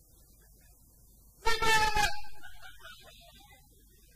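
A single loud horn-like blast, about half a second long, about a second and a half in, dying away in the hall's echo over the next second.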